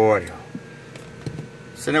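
A man's long, steady held "hello" into a CB microphone ends just after the start. A quiet stretch with a few faint clicks follows, and then the man speaks near the end.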